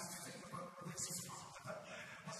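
A man preaching into a handheld microphone, his voice carried through the hall's sound system.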